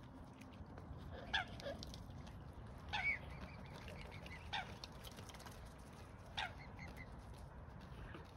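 Mute swans giving short calls, about four of them spaced a second or two apart, over a steady low background hiss.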